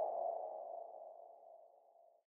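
The dying ring of an electronic ping-like sound effect: a single mid-pitched tone fading steadily away over about two seconds.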